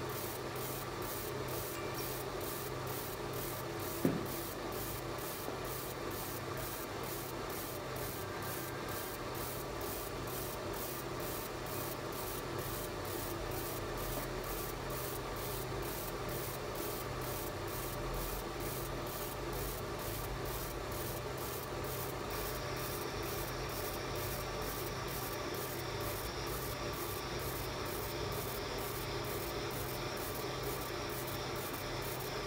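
Fiber laser marking machine engraving a photo into stainless steel: a steady rasping hiss with a faint even pulsing of about two to three beats a second, over a low machine hum. One sharp click about four seconds in.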